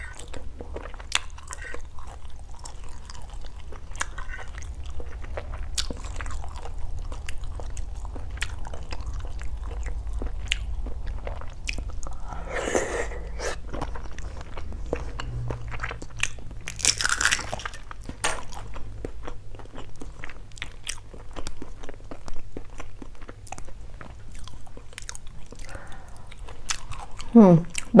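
Close-miked mouth sounds of someone eating balut (boiled fertilised duck egg) from a spoon: chewing with many small wet clicks and smacks, and two longer noisy bursts about midway.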